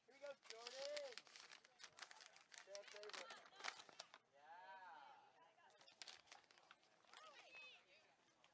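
Faint, distant voices calling and shouting across an open sports field, with a few scattered light ticks and knocks.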